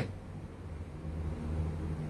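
A low, steady background rumble that grows a little louder about a second in.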